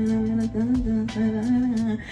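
A woman humming one held note that lifts slightly in pitch twice, over background music.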